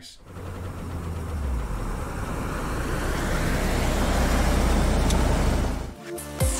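An edited transition sound effect: a rumbling swell of noise that builds steadily louder for several seconds and then cuts off suddenly.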